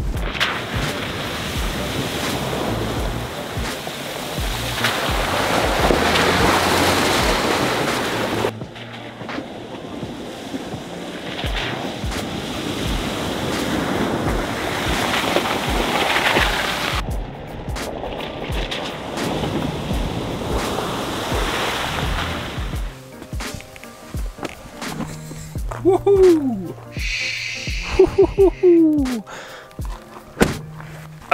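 Water rushing and splashing as a pickup's tyres ford a shallow rocky creek, with background music over it. The sound changes abruptly twice.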